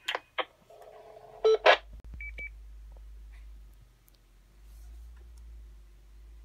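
Electronic beeps and sharp clicks from an amateur radio transceiver and SvxLink link node: a short steady beep at the start, several clicks with a brief burst of noise, the two loudest clicks about a second and a half in, then a quick double beep, after which a low hum runs on.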